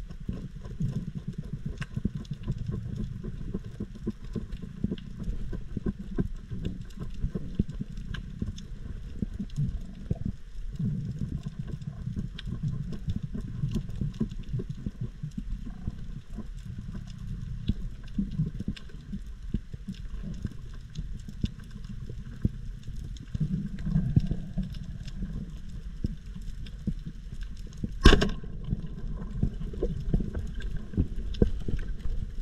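Underwater reef ambience heard through a camera housing: a low, muffled water rush with dense, steady fine crackling throughout. One sharp, loud knock comes near the end.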